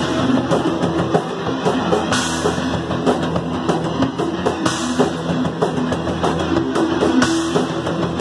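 Punk band playing live: distorted electric guitar, bass and drum kit in a fast, loud passage without vocals.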